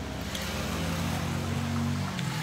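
A motor engine running with a steady low hum, growing slightly louder.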